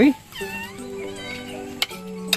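A drawn-out high call that dips and rises in pitch, over background music of long held notes.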